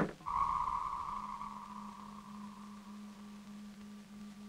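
Electronic science-fiction sound effect: a sharp click, then a high, sonar-like tone that comes in a moment later and slowly fades, over a steady low electronic hum.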